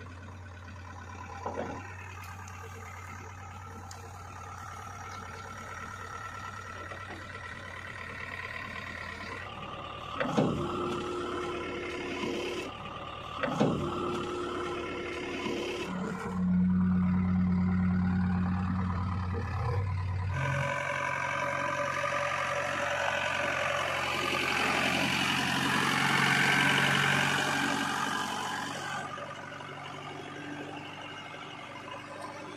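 JCB 3DX backhoe loader's diesel engine running steadily, with two sharp metallic clanks about a third of the way in. It runs louder for a few seconds past the middle, then a loud rushing noise builds over it and fades near the end.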